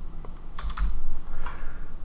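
A few keystrokes on a computer keyboard as a word is typed.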